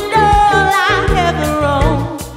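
A soul band playing with female voices singing. The lead holds one long note with vibrato over bass and regular drum hits.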